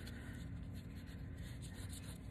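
Faint scratching of a drawing tip on paper as short sketching strokes are drawn.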